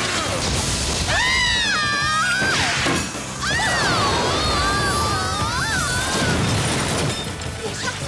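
Cartoon action soundtrack: music with a high, gliding lead line, mixed with crashing impact effects from objects being thrown.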